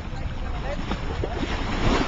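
Wind buffeting the microphone over sea water splashing and sloshing against rocks, with faint distant voices.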